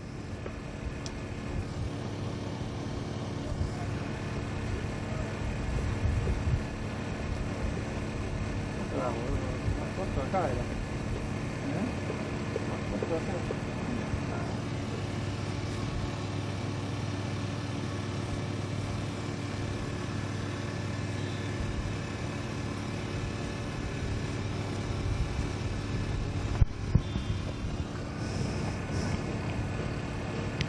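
Steady low mechanical hum with several held tones and a low rumble, with faint distant voices around the middle.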